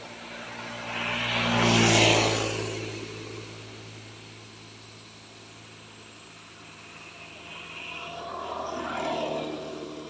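A motor vehicle passing by, its engine hum and road noise rising to a loud peak about two seconds in and then fading. A second, quieter vehicle passes near the end.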